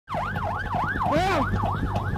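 Police patrol car siren in a fast yelp, its pitch sweeping up and down about two and a half times a second, with a second, lower siren tone joining about halfway through.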